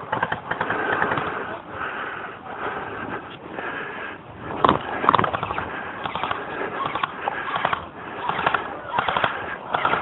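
Footsteps brushing through tall dry grass, with scattered pops of gunfire from a team skirmish game and a cluster of sharp cracks about five seconds in.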